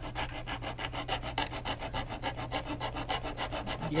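Hand file rasping on the plastic edge of a car's under-hood fuse box, cutting a groove for a wire to sit in; rapid, even back-and-forth strokes.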